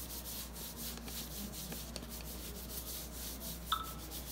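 Gloved hand rubbing baby powder over bare skin: a dry brushing in quick repeated strokes, with a short squeak near the end.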